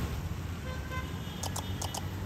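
Street traffic rumbling steadily, with a short car horn toot a little before the middle and a few sharp clicks near the end.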